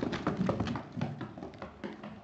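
Quick, irregular taps and clicks of a Chinese crested dog's shoe-clad paws climbing carpeted stairs, several steps a second, getting fainter near the end.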